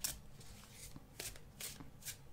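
Tarot cards being shuffled by hand: a few faint, irregular swishes of cards sliding over one another.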